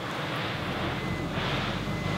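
A motor vehicle engine running with a steady low rumble that grows stronger about half a second in.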